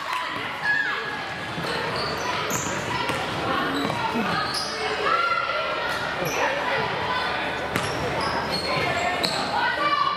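Basketball game sounds in an echoing gym: a basketball bouncing on the hardwood court, sneakers squeaking, and players and people in the stands calling out.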